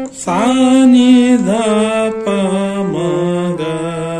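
Harmonium reeds sounding a sargam exercise note by note, stepping down in pitch about every two-thirds of a second in the second half, with a man's voice singing the note names along with it.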